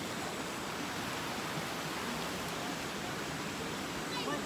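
Steady rushing of a shallow river running over rocks, an even hiss with no change throughout.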